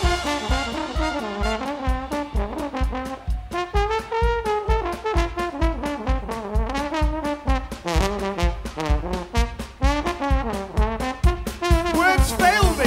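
Live brass band: a trombone solo with bending, sliding notes over a steady drum beat. The low bass notes drop out at the start, leaving the trombone and drums.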